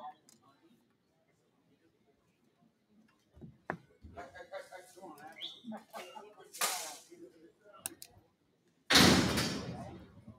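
Mostly quiet, with faint scattered clicks and rustles, then about nine seconds in a loud sudden slam that dies away over about a second.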